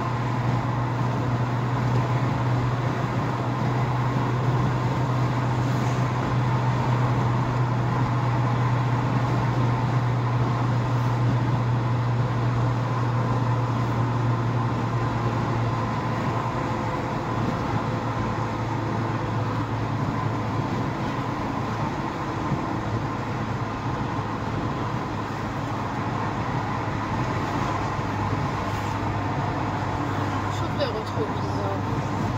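Steady engine drone and tyre-on-road noise heard from inside a car driving at highway speed. The low drone drops a little in pitch about halfway through.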